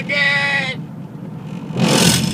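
Steady road and engine rumble inside a moving car's cabin, after a voice draws out a word in the first second. A short hiss comes near the end.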